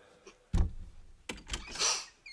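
A door opening: a low thump about half a second in, a sharp click, then a short rush of noise near the end.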